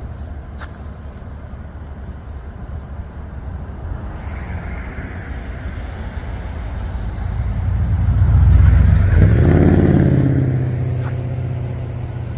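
A motor vehicle driving past: its engine and road noise build over several seconds, peak about nine seconds in with a drop in pitch as it goes by, then fade.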